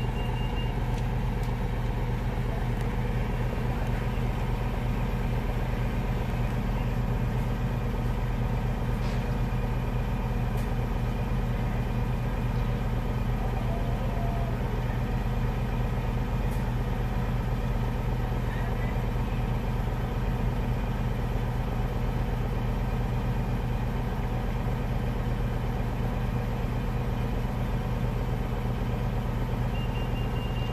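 A car engine idling with a steady low hum, heard from inside the cabin.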